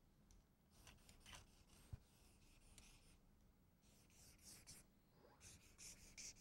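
Faint felt-tip marker strokes squeaking and scratching on flip-chart paper, coming in short runs of quick strokes, with a single soft knock about two seconds in.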